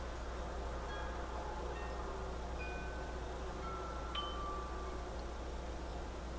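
Chimes ringing, single clear notes at different pitches about one or two a second, with one struck a little sharper about four seconds in, over a steady low hum.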